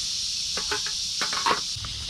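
Steady high-pitched hiss of insects, with a run of light clicks and knocks between about half a second and a second and a half in.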